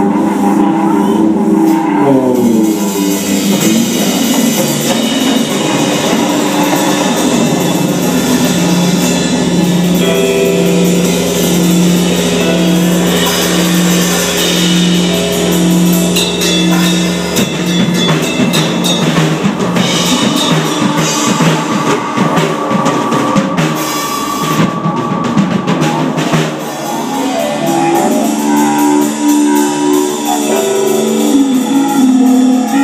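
Live rock band playing an instrumental passage on electric guitar, bass guitar and drum kit, with a long held note through the middle.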